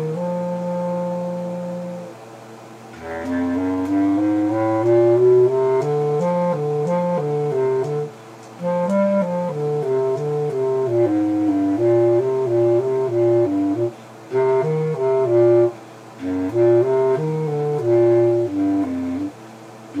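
A solo low-pitched wind instrument playing a melody one note at a time, in phrases broken by several short pauses.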